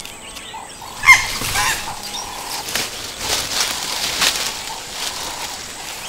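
A short, loud animal call about a second in that slides in pitch. It is followed by scattered rustles and knocks from a chimpanzee working a long stick in the branches of a tree.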